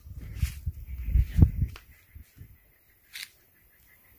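Low bumping and rustling handling noise as a guava stick is pulled out of the soil, with a few sharp clicks, dying away after about two seconds; one short rustle about three seconds in.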